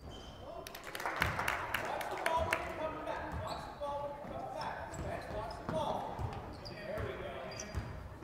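A basketball bouncing on a hardwood gym floor during play: repeated sharp thuds, with voices of players and spectators echoing around the gym.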